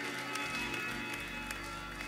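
A church keyboard instrument holding sustained chords, with scattered clapping from the congregation. A low bass note joins about a second in.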